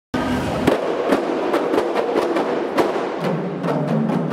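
A kompang ensemble, Malay hand-held frame drums, beaten with sharp open-hand slaps at a few strikes a second. A steady low hum joins just past three seconds.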